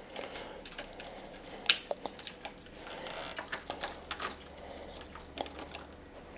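Small clicks and taps of hard plastic parts being handled as a clear plastic dome piece is pegged onto a mecha action figure's head, with one sharper click about one and a half seconds in.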